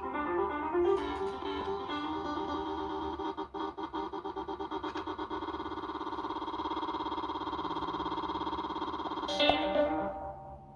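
Sampled music from the Koala Sampler app, played live from a pad controller: a plucked-sounding melodic loop that about three seconds in is chopped into rapid repeats. The repeats speed up until they blur into a continuous buzzing tone, and a sharp, loud burst comes near the end.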